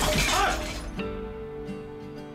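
A loud crash with shattering, like something breaking, fading out by about a second in. It is followed by background music holding a steady note.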